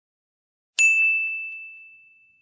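A notification-bell ding sound effect: one sudden high, clear chime about a second in that rings out and fades over the next two seconds, with a few faint clicks just after it.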